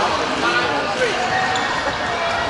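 Many overlapping voices chattering in a large, busy sports hall during a badminton tournament, with no single voice standing out.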